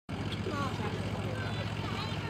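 A motor running steadily, a low even hum, with faint voices of people talking over it.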